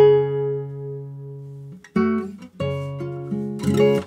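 Nylon-string classical guitar played by hand. A chord rings out and fades for about two seconds, then a few more single notes are plucked.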